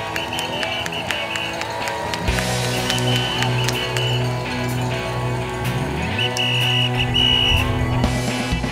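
Background music with a steady beat; a deep bass line comes in about two seconds in.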